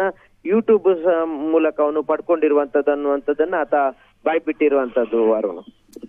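Speech only: a voice talking quickly in short phrases, with brief breaks about half a second and four seconds in.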